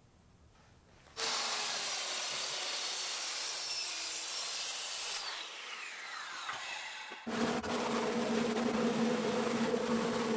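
A circular saw cutting pine, starting suddenly about a second in and running steadily for about four seconds, then winding down with a falling pitch. About seven seconds in a different steady buzzing sound with a low hum starts and runs on.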